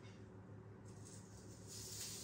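Near silence: room tone with a steady low hum, and a faint hiss rising near the end.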